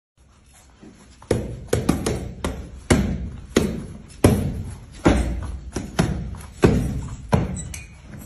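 Punches landing on a heavy leather punching bag: about a dozen dull thuds in an uneven rhythm, starting about a second in.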